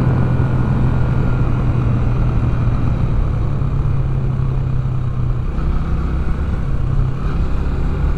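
Yamaha YB125SP's single-cylinder 125 cc engine running steadily while riding, under a rush of wind noise. The engine note changes and becomes less steady about five and a half seconds in.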